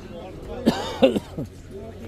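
A person clearing their throat: a rough burst about two thirds of a second in and a shorter one just after a second, with faint talking around it.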